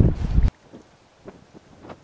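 Wind buffeting the microphone, a heavy low rumble that cuts off suddenly about half a second in, leaving quiet with a few faint ticks.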